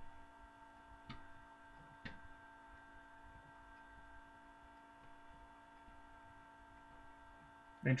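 Faint, steady electrical hum made of several steady tones, with two small clicks about one and two seconds in.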